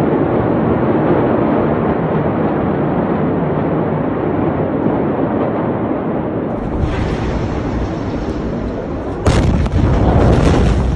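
The Beirut port ammonium nitrate explosion: a steady low noise from the burning port, then about nine seconds in the blast wave arrives as a sudden, very loud boom.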